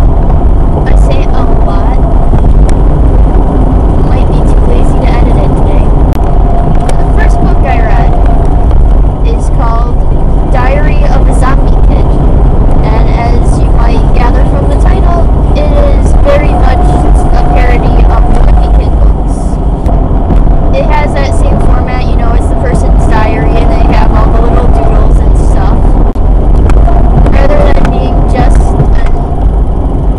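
Loud, steady low rumble of road and engine noise inside a moving car's cabin, with a voice talking over it through most of the stretch.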